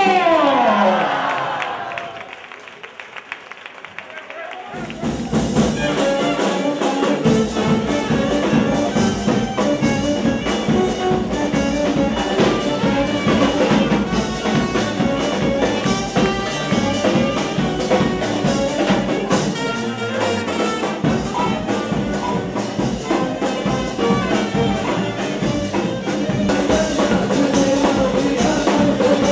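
Charanga brass band playing: saxophone and trumpets over a steady drum beat. A falling slide opens, the sound dips for a couple of seconds, and the full band comes in about five seconds in.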